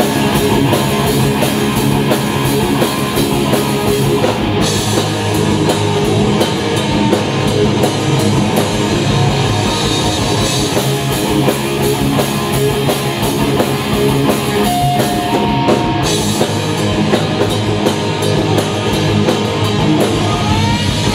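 Live rock band playing an instrumental passage on two electric guitars, bass guitar and drum kit, loud and steady throughout.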